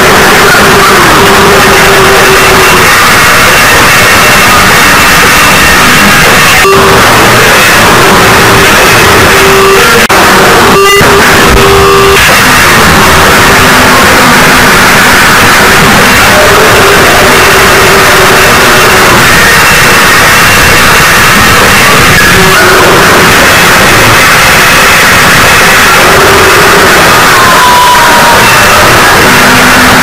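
Harsh noise music: a constant, loud wall of distorted noise with faint wavering held tones inside it and no beat.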